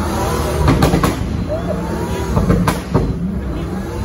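A supercar's engine running low and steady at idle pace, a deep rumble under the chatter of a surrounding crowd.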